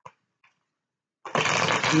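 Near silence with two faint clicks, then a little past halfway a sudden loud, steady rustling noise.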